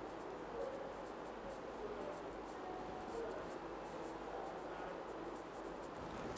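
Felt-tip marker scratching faintly on a whiteboard in a run of quick short strokes, hatching marks onto a map drawing.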